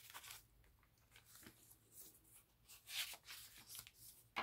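Faint rustling of paper as the pages of a handmade junk journal are handled and a page is turned, in a few short swishes, the loudest about three seconds in.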